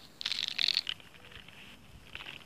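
A short, crunchy rustle of pink fertilizer granules and dry leaf litter as a hand sprinkles the granules around the plants. It lasts under a second, starting just after the beginning, and then goes quiet.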